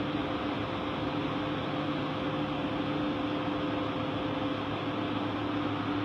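Steady machine hum with an even hiss, unchanging throughout.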